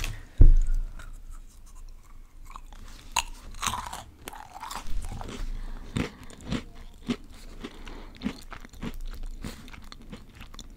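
Close-miked chewing of a crunchy snack, with irregular crunches and crackles throughout. A heavy low thump just under half a second in is the loudest sound.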